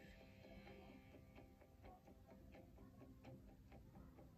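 Faint quick ticking, about three to four ticks a second, over faint background music, all at a very low level.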